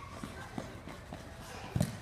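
Small children's running footsteps and ball touches on artificial turf: a string of light thuds, with one louder thump near the end.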